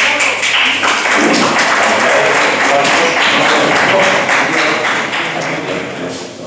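A roomful of people clapping and cheering, starting suddenly and dying down toward the end.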